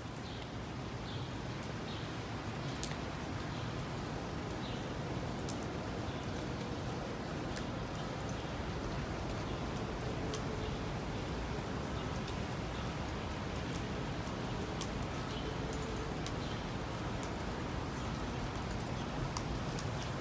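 Steady hiss of rain falling on pavement, with a few faint ticks.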